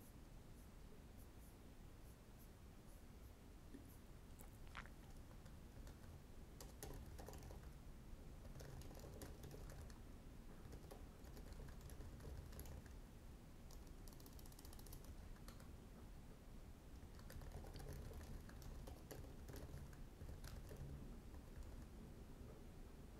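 Faint typing on a computer keyboard: quick runs of key clicks in bursts, with short pauses between them.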